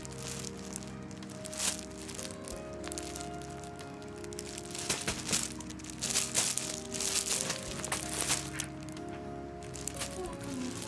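Fabric cat tunnel rustling and crinkling as a cat scrabbles on and into it: one burst early, then a run of rustles from about five seconds in. Steady background music plays throughout.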